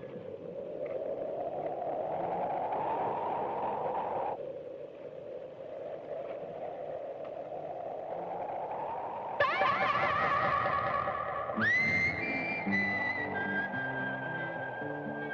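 Western film score music: a rising swell that breaks off and builds again. About nine seconds in, a wavering, echoing electric tone comes in, glides up and holds a high note over lower notes.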